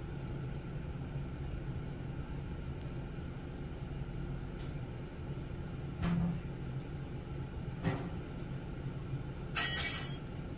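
A steady low rumble, with a few faint clicks and a short, louder rustling burst near the end.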